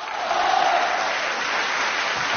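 Studio audience applauding, swelling in as a stage performance ends and then holding steady.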